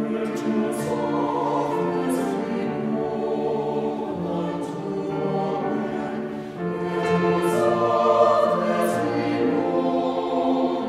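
Small mixed choir of men and women singing a sustained choral piece, growing louder about two-thirds of the way through.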